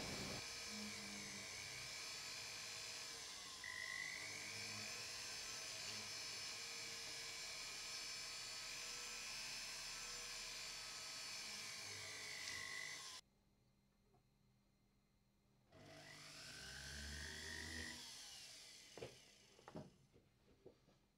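Small rotary handpiece (jeweller's pendant-motor type) spinning a polishing wheel against a metal ring. Its thin motor whine rises and dips in pitch as the speed changes. It stops for a couple of seconds about two-thirds through, runs again briefly, then gives way to a few light clicks near the end.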